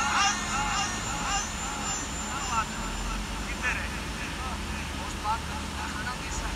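A man's voice trailing off, then a few brief scattered vocal fragments over a steady low background rumble.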